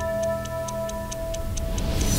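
Theme music of a TV news programme: a clock-like ticking about four times a second over a held chord that slowly fades.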